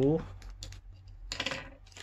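Light handling clicks, then a brief crinkle of a clear plastic zip bag holding a charging cable as it is picked up.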